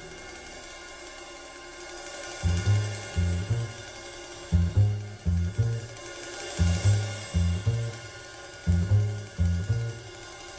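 Jazz double bass plucked in short phrases of low, ringing notes, coming in about two and a half seconds in, with cymbals faintly behind.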